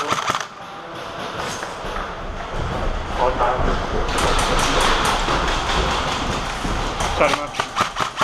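Airsoft rifles firing in rapid strings of clicks: one burst at the start, another a little after halfway, and more near the end, over indistinct shouting.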